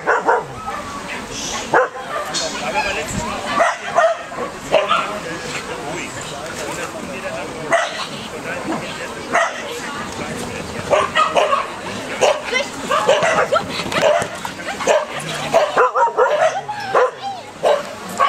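A dog barking and yipping again and again, in short sharp calls that come thickest in the second half, with a person's voice over it.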